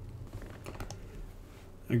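Faint, scattered computer keyboard clicks over a low steady hum.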